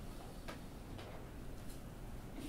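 Quiet room tone with a few faint, soft ticks spaced roughly half a second to a second apart.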